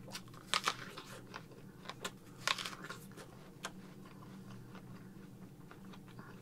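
A person biting into and chewing a raw Appaloosa red-fleshed apple: crisp crunches of bites about half a second and two and a half seconds in, with quieter chewing between and after.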